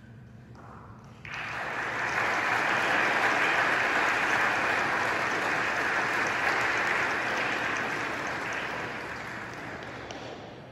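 Congregation applauding, starting suddenly about a second in and slowly dying away near the end.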